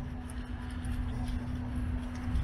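Steady outdoor background of street traffic: a low rumble with a constant low hum, and no clear bird calls.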